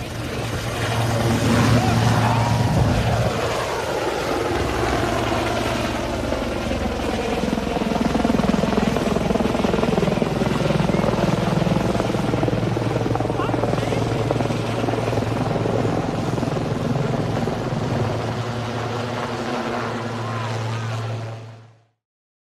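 Sikorsky S-76 twin-turbine helicopter lifting off and climbing overhead, with a steady low rotor hum under loud turbine and blade noise whose pitch glides as it passes. The sound cuts off suddenly near the end.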